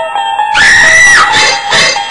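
Music with plucked string notes is cut into about half a second in by a loud, high-pitched scream, held for under a second before it stops abruptly. A run of loud pulsing bursts follows, about two or three a second.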